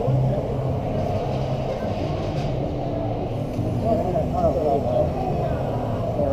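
Voices talking in the background over a steady low rumble and hum, with a few clearer words near the end.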